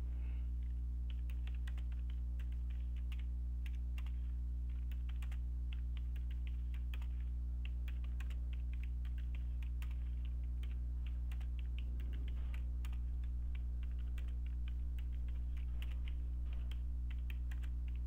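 Typing on a computer keyboard: a quick, irregular run of key clicks with short pauses between words, over a steady low hum.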